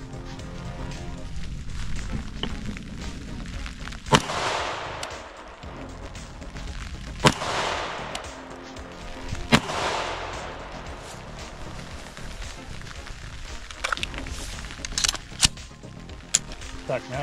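.223 semi-automatic rifle fired three times, about three and two and a half seconds apart. Each shot is a sharp crack followed by a long rolling echo. This is a test group fired to check the red dot's zero after a four-click adjustment. A few small clicks come near the end.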